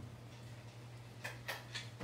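Three light wooden clicks about a quarter second apart in the second half, from a tabletop wooden easel being handled and set up, over a faint steady low hum.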